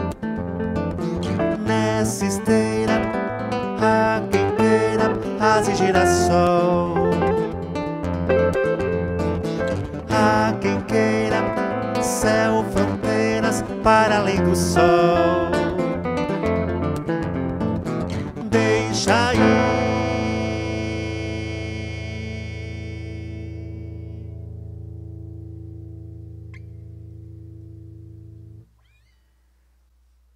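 Archtop electric guitar and acoustic guitar playing an instrumental passage together, with plucked notes and chords. About two-thirds of the way in they land on a final chord that rings on, fading for about nine seconds: the close of the song. It stops abruptly about a second before the end.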